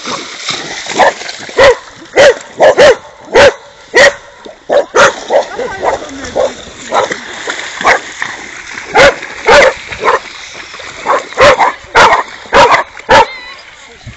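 A dog barking in sharp, high, short barks, about two dozen of them in irregular runs of one every half second or so, with a thinner spell in the middle.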